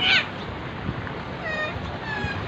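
High-pitched animal calls: a short, loud meow-like cry right at the start, then two fainter falling whistle-like calls about one and a half seconds in.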